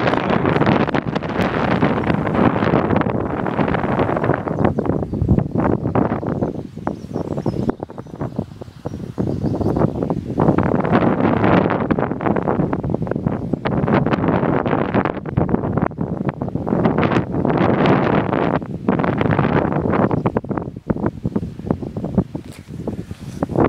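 Wind gusting across the camera's microphone: loud, rough noise that comes in waves and eases for a few seconds about seven seconds in before picking up again.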